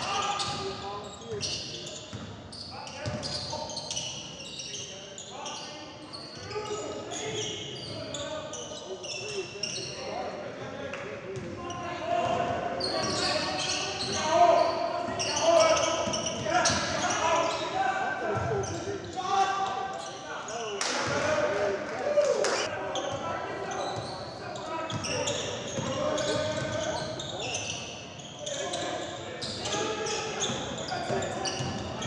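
Basketball game in a gym: a ball dribbled on the hardwood floor, under players and coaches calling out across the hall.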